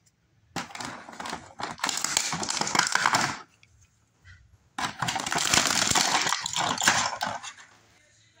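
Clear plastic blister tray of an action-figure package crackling and crinkling as the figure is worked free, in two bouts of about three seconds each with a short pause between.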